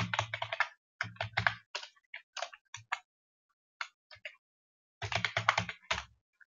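Computer keyboard typing in quick bursts of keystrokes, with short pauses between the bursts and a denser run of keys near the end.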